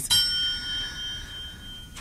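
A single bell-like chime, struck once and ringing with several clear high tones that fade away over about two seconds.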